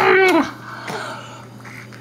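Baby squealing: one loud, high squeal that drops in pitch and breaks off about half a second in.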